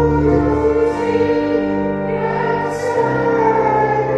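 A hymn sung by a choir over long held chords, the notes changing every second or two.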